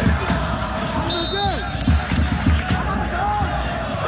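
Drums beating repeatedly, a few beats a second, with voices over them: supporters drumming and chanting in a football stadium, heard through the match broadcast. A short high whistle-like tone sounds a little over a second in.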